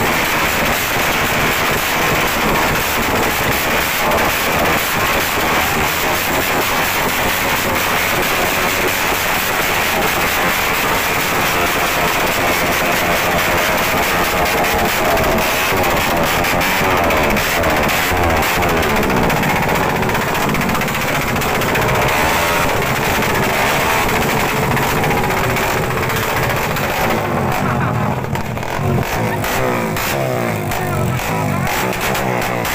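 Motorcycle engine revved hard and repeatedly through a loud aftermarket exhaust that is spitting flames. Amplified music plays under it and comes to the fore near the end.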